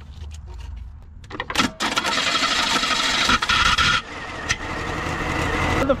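Car starter motor cranking after a click as its terminals are bridged with a metal caulking gun in place of the faulty ignition switch, the engine catching about four seconds in and settling to a steady run.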